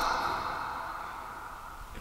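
A man's faint breathy exhale that fades away over about a second and a half, leaving quiet room tone.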